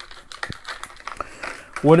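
A clear plastic case of TIG torch parts (collets, collet bodies, ceramic cups) being handled and opened: a run of small sharp clicks and crinkly plastic rustling. Speech begins near the end.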